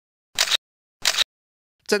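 Two short camera-shutter clicks, about two-thirds of a second apart.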